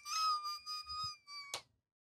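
A person's high-pitched squealing laugh: one long, almost level held note whose loudness pulses, breaking off with a click about one and a half seconds in.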